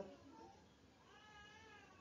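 A faint animal call in the background: a single drawn-out, high-pitched cry lasting under a second, starting about a second in and arching slightly in pitch.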